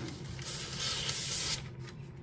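Sheets of paper being slid and shuffled on a desk: a light tap, then about a second of papery sliding and rustling.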